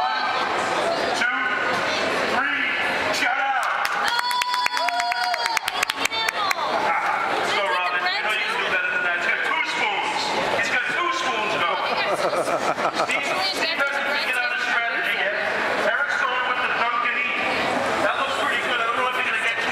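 A man's voice amplified through a handheld megaphone, buzzy and hard to make out.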